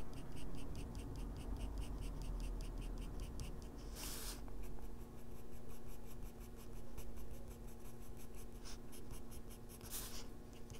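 Faber-Castell Polychromos colored pencil scratching across toned gray drawing paper in short, quick shading strokes, several a second, with a brief pause about four seconds in.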